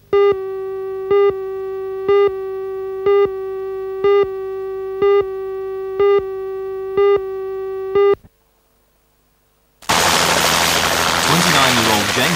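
Countdown-leader test tone: a steady buzzy tone with a louder beep once a second, nine beeps, cutting off about 8 seconds in. After a second and a half of silence, a helicopter's loud rotor and engine noise starts as it hovers low over the ground.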